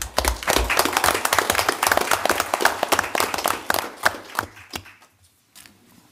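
A roomful of people applauding for about four and a half seconds, then dying away.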